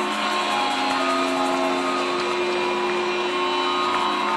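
Music with held, steady notes playing over an arena's sound system, mixed with crowd noise, as a goal is celebrated.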